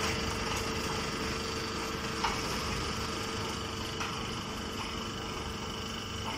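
Straw-processing machinery, a conveyor feeding a drum machine, running steadily: an even mechanical hum with a held low tone and a faint high whine, and a couple of light clicks.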